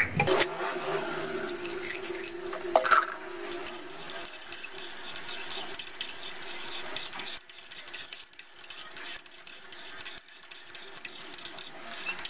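Water poured into a ceramic mug holding honey, then a metal teaspoon stirring it, clinking quickly and repeatedly against the inside of the mug.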